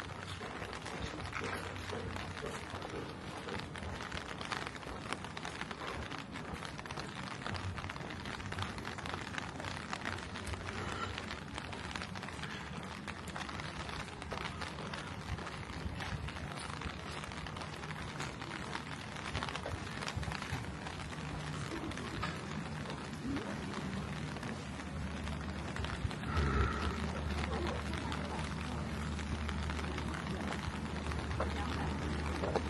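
Rainy street ambience: a steady hiss of light rain on wet pavement, with footsteps on the wet ground and faint voices in the background. A steady low hum comes in about four seconds before the end.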